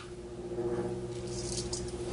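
Faint patter and rustle of dried Italian seasoning being sprinkled over oiled bread chunks, over a steady low hum.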